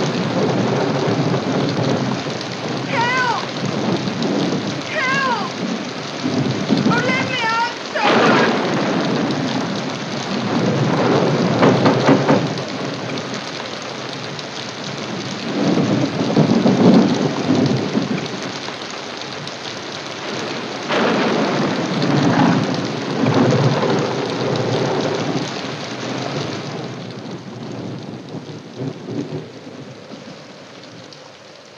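Storm sound: heavy rain with thunder rolling and swelling several times. Three short wavering high calls sound in the first few seconds.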